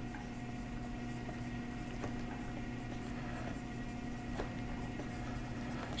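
Pen stylus scratching faintly on a graphics tablet, with a few light taps, over a steady low electrical hum.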